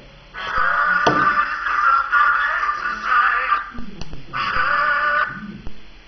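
A toy music box playing a tune that starts just after the beginning and stops about three and a half seconds in, then plays again for about a second. A few knocks from the box being handled, one about a second in.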